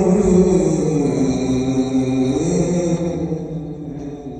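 A man reciting the Quran in a melodic chanted style, one long drawn-out phrase held on sustained notes that glide slowly in pitch and tail off near the end.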